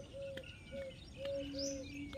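Birds calling in the trees: a short, low note repeated about five times at uneven spacing, with thin, high, falling chirps over it and one longer, steady low note about two-thirds of the way through.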